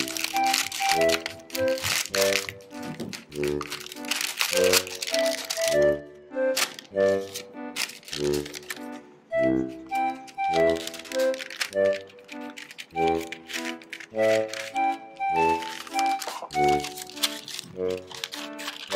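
Thin tissue paper inside a chocolate box crinkling in several bursts as it is peeled back and folded open, over background music.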